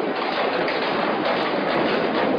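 Loud, steady din of a large crowd: many voices and noise blending into one continuous rushing wash, with no single voice standing out.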